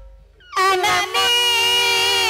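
A female singer's voice comes in about half a second in with a short upward slide, then holds one long, slightly wavering sung note.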